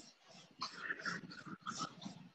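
Faint quick panting, a run of short breaths several times a second.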